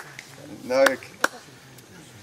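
Newly lit dry-grass tinder and small twigs burning, giving a few sharp snaps, one at the start and another just past a second in, with fainter ticks between. A short burst of a person's voice comes just before the second snap.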